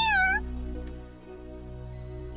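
A cartoon kitten meows once, briefly, right at the start, over soft background music.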